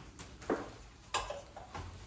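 A few short clicks and knocks of parts and gloved hands against the metal frame of an adjustable bed base as it is assembled, two sharper ones about half a second apart early on and a fainter one near the end.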